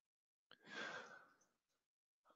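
A single faint breath, about half a second long, picked up close on a headset microphone, a little after the start; otherwise near silence.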